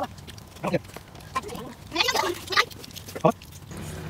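Children laughing in a few short, scattered bursts, with faint clicks and rustling in between.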